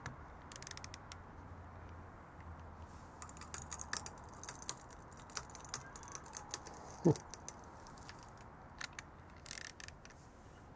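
Faint, scattered clicking of a ratchet handle on a digital torque adapter as a 3D-printed PLA+ test piece, clamped in a vise, is twisted. A short falling squeak comes about seven seconds in.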